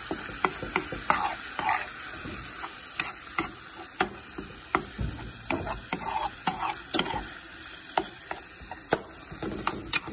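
Metal spoon stirring ground beef and sauce in a frying pan, its edge clicking and scraping against the pan in sharp, irregular strokes, over a steady sizzle of the meat frying on the burner.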